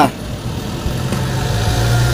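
A motor vehicle engine running steadily with a low hum, growing a little louder in the second second.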